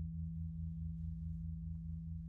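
Paiste 28-inch Bronze Gong No. 8 ringing on after being played: a deep, steady hum with a lower tone that pulses about five times a second, slowly fading.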